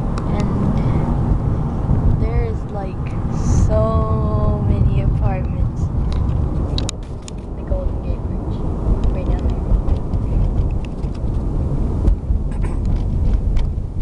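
Steady low rumble of road noise inside a car driving in city traffic. A voice is heard briefly, muffled, around four seconds in.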